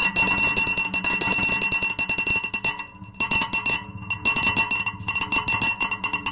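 Live electronic noise music: a steady high-pitched whine and a lower tone over dense crackling clicks, thinning out briefly about three seconds in.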